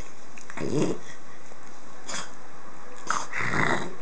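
A puppy growling in play while a hand rubs and wrestles with it: a short growl about half a second in, a brief one about two seconds in, and a longer growl near the end.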